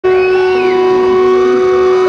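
Loud sustained droning tones from the band's amplified instruments before the song starts, several pitches held steady. A higher tone bends up and back down in the first half-second or so.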